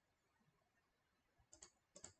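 Near silence with a few faint, sharp clicks: a quick pair about one and a half seconds in and another pair at the very end.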